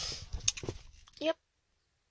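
A short spoken "yep" among faint clicks and rustling, then the sound cuts out to dead silence at an edit.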